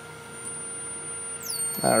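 Thin high-pitched electronic whine from a frequency-driven high-voltage supply. About three quarters of the way through, the whine glides down in pitch and settles on a steady lower tone, with a second, higher tone above it, as the driving frequency is turned. A faint hiss and hum lie beneath.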